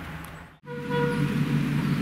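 A diesel locomotive engine running steadily. Then, after a sudden break, a louder small railway engine runs with a short horn toot that fades away.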